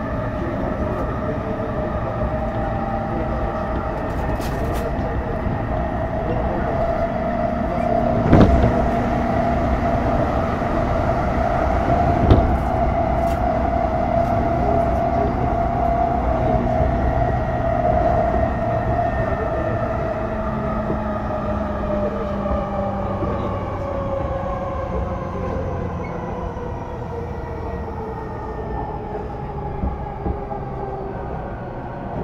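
E233-0 series electric train running, its Mitsubishi IGBT-VVVF inverter and traction motors whining steadily over wheel and track rumble. About two-thirds of the way in, the whine falls in pitch as the train slows. Two sharp knocks from the wheels come about 8 and 12 seconds in.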